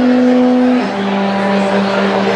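Alphorn played solo: a held note that steps down, a little under a second in, to a lower note sustained to the end, closing a slowly descending phrase.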